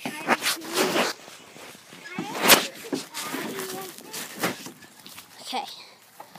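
Scattered bits of children's voices, with one sharp knock about two and a half seconds in.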